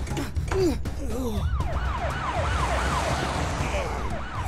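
Police siren wailing in quick rising-and-falling sweeps, about three a second, starting low and climbing higher in pitch over the first second or so, over a low rumble.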